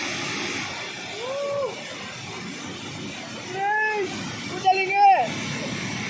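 Dam water rushing forcefully out of an open sluice gate and down the spillway, a steady roar of water. People's voices call out over it a few times.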